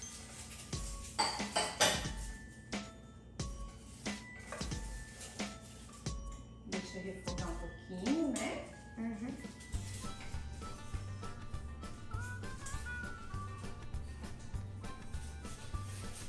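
A spoon clinking and scraping against a stainless steel cooking pot as the ingredients are stirred. Background music with a steady bass beat comes in about ten seconds in.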